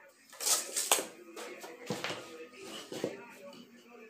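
Pine boards and hand tools handled on a workbench: a few sharp knocks and clatters, the loudest cluster about a second in, with single knocks near the middle and about three seconds in.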